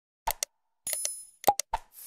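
Sound effects of an animated like-and-subscribe graphic: a series of quick clicks and pops, with a short bright chime about a second in and a louder pop just after.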